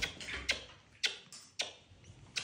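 Repeated kisses, short lip smacks on a baby goat's head, about four of them, each about half a second apart.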